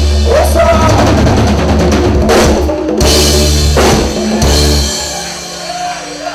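Live Tejano band playing the final bars of a song: drum kit and cymbal hits punctuating a held bass note, then the music stops about five seconds in.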